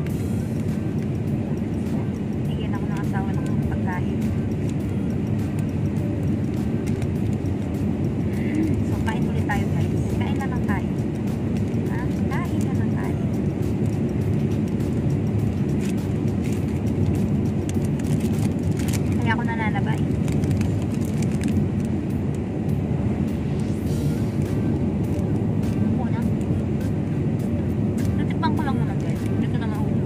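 Steady low rumble of road and engine noise inside a car's cabin while it is being driven.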